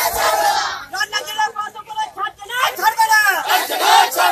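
A crowd shouting slogans together: a long loud shout at the start and another from about two and a half seconds in, with talking between.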